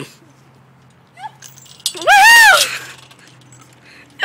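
A girl's single high-pitched squeal, rising and then falling in pitch, about two seconds in.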